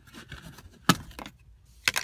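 Two sharp plastic clicks about a second apart as the plastic covers on a car seat's rails are pulled off.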